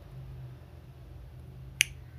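A single sharp computer-mouse click near the end, over a steady low electrical hum.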